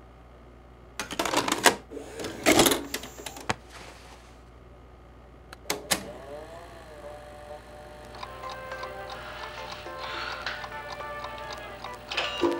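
Plastic clacks and knocks of a VHS cassette being handled, loudest in the first few seconds, over a steady low electrical hum. A couple of sharp clicks, like remote or VCR buttons, come about six seconds in with a short wavering tone after them, and music fades up over the last few seconds.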